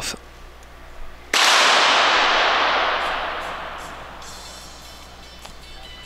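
Sport pistol firing: a sudden sharp report about a second in, followed by long reverberation that rings on and fades away over about three seconds.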